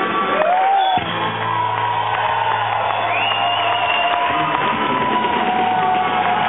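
Live blues band with electric guitar and drums. From about a second in the drumming stops and the band holds a ringing chord, while the audience cheers, whoops and whistles.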